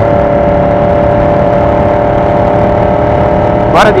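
Yamaha R1 inline-four sport bike engine running at a steady cruising speed, holding one even tone over a low, uneven rumble of wind and road noise.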